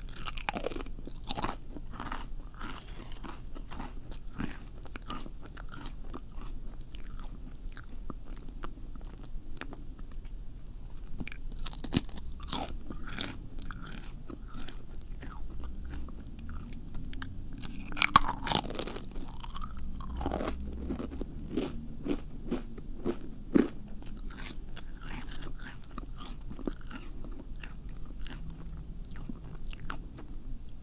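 Close-miked ASMR eating sounds: crunchy biting and chewing, a dense run of small crisp crackles and clicks with a few louder crunches scattered through.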